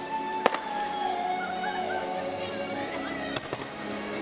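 Fireworks going off over music: one sharp bang about half a second in, the loudest sound, and two or three quicker cracks near the end.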